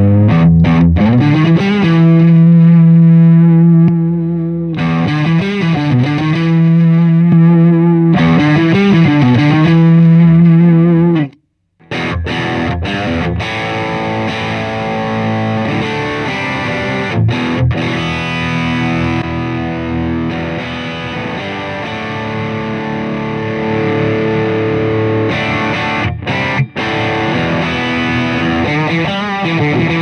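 Overdriven electric guitar, a Fender Telecaster through a dirty Hughes & Kettner Tubemeister Deluxe 20 amp, boosted by an MXR Mini Booster in the amp's effects loop, playing long sustained notes with string bends. After a short break about 11 seconds in, playing resumes with busier phrases, now boosted by a Xotic EP Booster (DIP switch 1 off, 2 on).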